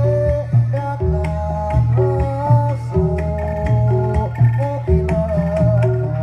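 Javanese gamelan music accompanying a jathilan horse dance: a drum pattern that repeats about once a second under a held, wavering melodic line.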